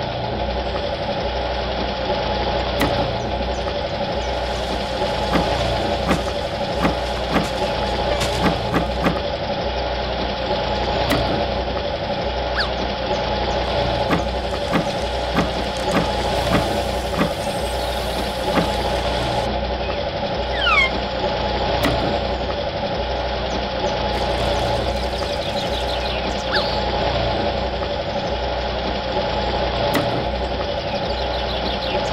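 Small electric gear motor of a miniature DIY concrete mixer, switched on suddenly and running steadily as it turns the drum: a constant hum with irregular light clicks and ticks.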